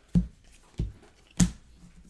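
2017-18 Donruss basketball cards being set down one at a time onto stacks on a desk. Each lands with a short slap, three in a steady rhythm about 0.6 seconds apart, the last one the loudest.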